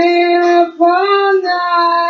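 A woman singing three long held notes. The middle note rises and then falls back in pitch.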